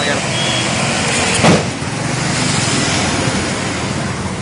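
Truck engine running as it drives past, over a steady noisy background, with one loud bang about a second and a half in.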